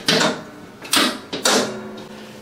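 Chiropractic adjusting table's drop mechanism clacking loudly three times in quick succession: at the start, about a second in, and again half a second later, during a hip adjustment.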